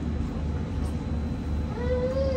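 Sightseeing boat's engine running steadily with a low throb. Near the end a short, rising voice-like call starts over it.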